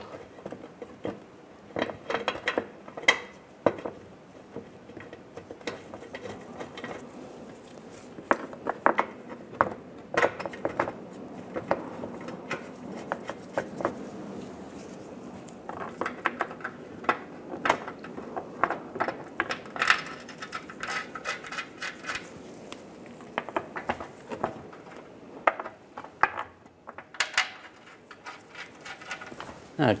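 Irregular light clinks, taps and knocks of metal bolts and a plastic underbody shield being handled as the bolts are threaded in by hand.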